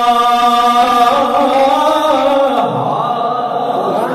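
A man's voice chanting a sermon verse into a microphone in a drawn-out melodic style. It holds one long steady note, then moves through a slow wavering run and drops to a lower note about two and a half seconds in.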